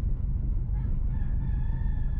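A rooster crowing once, faintly, a long drawn-out call that starts about a second in. Under it runs the steady low rumble of a car driving slowly on a gravel lane.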